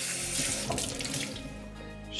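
Kitchen tap running water into a sink while a Chux cloth is wetted under it; the flow stops near the end.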